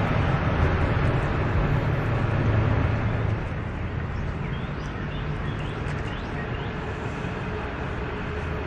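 Low rumble of motor-vehicle traffic, louder for the first three seconds or so as a vehicle passes, then easing to a lower steady drone.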